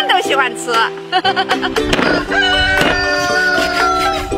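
A rooster crowing over background music: one long crow beginning a little before two seconds in and held for about two seconds, slowly dropping in pitch.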